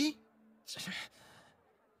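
A person's sigh: one breathy exhale a little under a second in, trailing off softly.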